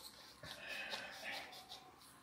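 Hand-twisted pepper grinder grinding peppercorns: a faint, dry rasping that starts about half a second in and runs for over a second.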